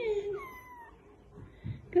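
Kittens mewing: one pitched mew fading away at the start, then thin, high, falling mews.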